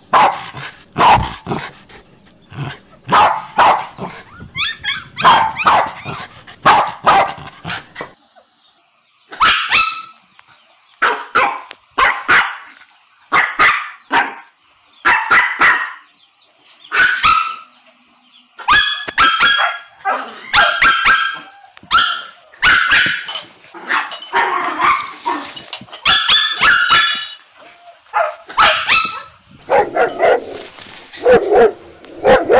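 Siberian husky puppies yipping and barking in many short, separate bursts, some higher and whiny.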